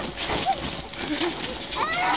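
Young children squealing and laughing in short, high, wavering cries, with a rising squeal near the end, over the hiss of a garden hose spraying water onto a trampoline mat.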